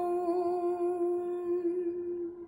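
A woman's voice humming one long, steady note unaccompanied, holding out the end of a lullaby line.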